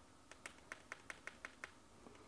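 Faint, quick clicks, about eight of them at roughly five a second, from the digital microscope's zoom control being pressed as the image magnifies.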